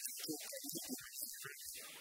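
A man speaking over a steady hum and hiss; the speech stops near the end.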